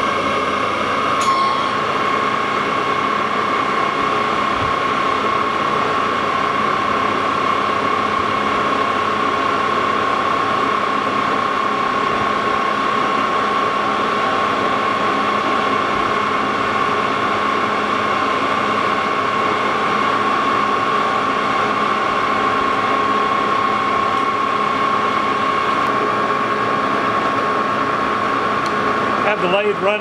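Lodge & Shipley geared-head engine lathe running at low speed, about 136 rpm, with a steady gear whine; it spins a rough cast iron pulley while the boring bar is fed in without cutting yet.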